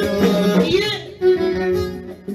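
Live band music led by a violin played upright on the knee, which plays a wavering melodic phrase over a rhythm accompaniment. The rhythm stops about halfway through and a loud held note follows.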